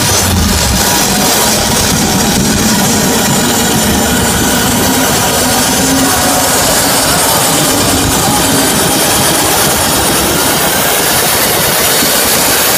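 Loud electronic dance music from a live DJ set, played over a large venue sound system. It is a dense, steady wall of sound with no breaks.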